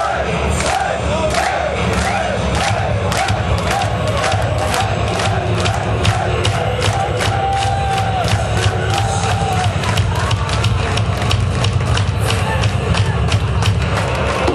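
Live metalcore band playing loud and heavy: dense low guitars and bass under a fast, steady drum beat, with a voice shouting over it.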